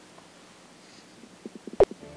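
A man's throat making a quick run of short gurgling, gulping sounds about a second and a half in, ending in one loud sharp click.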